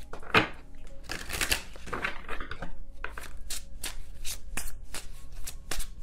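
A tarot deck being shuffled by hand: a quick, uneven run of card flicks and slaps.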